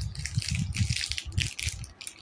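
Irregular rattling and rustling clatter from something being handled right against the microphone.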